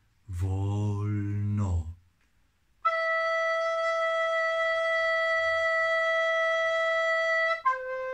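Plastic recorder playing a long, steady held note, the high E, for about five seconds, then stepping down to C near the end. These are the first notes of a song intro, played slowly. A man's voice is heard briefly before the recorder comes in.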